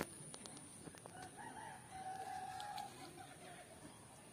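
A rooster crowing once, starting about a second in: a call of about two seconds that ends on a long held note.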